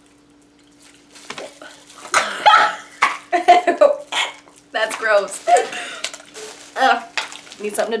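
Two young women laughing and making disgusted noises after tasting a candy, starting about a second in and going on in short fits to the end. A faint steady hum runs underneath.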